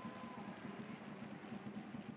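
Stadium crowd noise from the stands during a football match, a steady low hubbub with no single event standing out.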